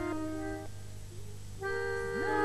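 Instrumental introduction to an old Serbian folk song: several notes held together as steady chords, breaking off about two-thirds of a second in, then a new held chord starting near the end.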